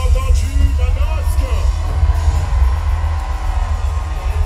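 Live band music from the audience floor of a concert hall, loud with heavy bass, and a voice singing over it.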